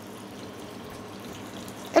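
Pieces of grouper frying in hot oil with garlic in a pan, a steady sizzle.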